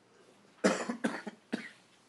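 A person coughing twice, a little over half a second in, followed by a brief sharp click.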